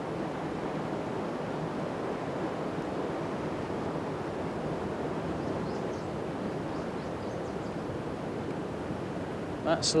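Steady rush of fast-flowing river water running over a stone sill, an even, unbroken noise.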